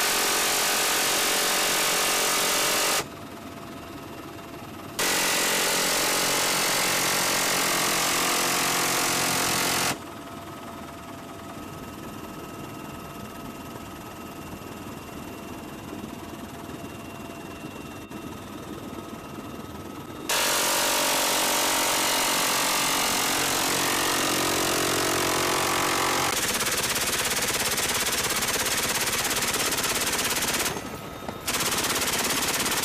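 Helicopter door-mounted machine gun firing in long sustained bursts: one of about three seconds at the start, one of about five seconds, and a long one of about ten seconds near the end. In the pauses between bursts a steady helicopter engine whine continues.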